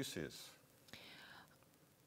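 The last syllable of a man's spoken word trailing off, then a faint, short breathy sound, like a whisper or an intake of breath, about a second in; otherwise very quiet.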